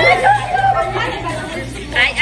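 Several women talking and shouting over one another, loudest at the start, with music playing more faintly underneath.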